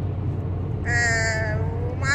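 A woman's voice holding one long drawn-out vowel for about a second, starting about a second in, over the steady low hum of the car.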